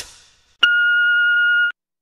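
A single steady electronic beep, about a second long, from an answering machine signalling the start of a recorded message. It comes just after the previous track's sound dies away.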